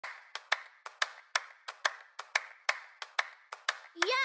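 A steady, quick rhythm of sharp claps, about four a second, alternating stronger and weaker hits, each with a short hissy tail.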